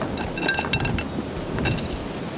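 Light metallic clinks with a short ringing tone, several in quick succession in the first second and another quick run near the end, as small metal fishing tackle and a rigging needle are picked up and handled.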